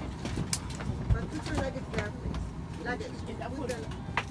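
Airliner cabin during boarding: a steady low rumble with other passengers' voices in the background, and a few short knocks and rustles from clothing and bags brushing close to the microphone.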